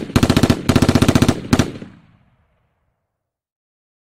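Machine-gun sound effect: short bursts of rapid automatic fire, about a dozen shots a second, that stop about a second and a half in and leave a brief echo fading out.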